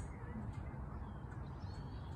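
Quiet room tone in a pause between spoken passages: a steady low hum with a faint even background hiss.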